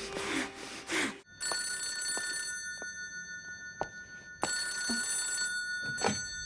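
A telephone ringing twice, each ring a steady high multi-toned ring lasting about a second, with faint clicks in the gap between. Two brief rushing noises come before the rings in the first second.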